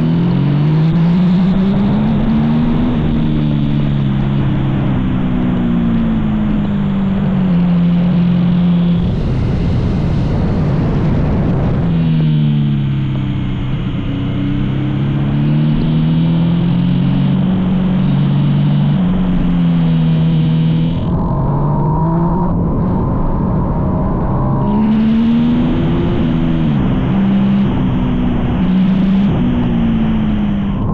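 Yamaha MT-09 SP's inline three-cylinder engine at racing pace, the engine note climbing as it pulls through the gears and falling as the throttle is shut for bends, over steady wind rush. Twice, about nine seconds in and again about twenty-one seconds in, the engine note drops away for a few seconds off the throttle before picking up again.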